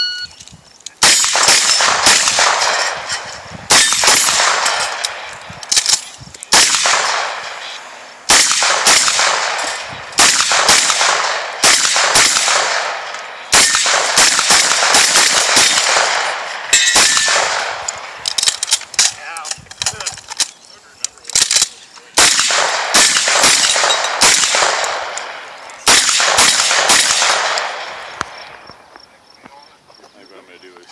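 Rifle fired in rapid strings of shots with short pauses between them, each string trailing off, mixed with the clang and ring of bullets striking steel targets. The firing ends about two seconds before the end.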